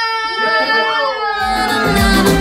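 A woman's voice holding one long high note, with other voices in the room beneath it, after a team cheer. About one and a half seconds in, music with a bass line starts.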